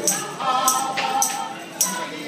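Live klezmer band: voices singing together over acoustic guitar, with a bright jingling percussion hit keeping a steady beat about three times every two seconds.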